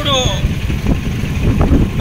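Passing road traffic, heard as a low rough rumble mixed with wind buffeting the microphone, with a man's voice briefly at the start.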